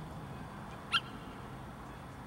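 A Yorkshire terrier gives a single short, high yip about a second in, over a steady low background hum.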